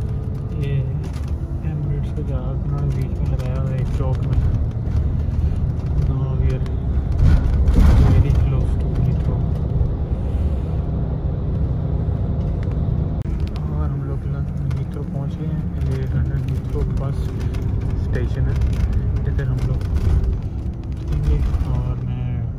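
Inside a moving bus: steady low engine and road rumble with indistinct voices in the background, and a louder rush of noise about eight seconds in.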